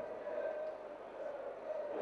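Faint, steady ambience of a quiet, sparsely filled football stadium, with a faint hum.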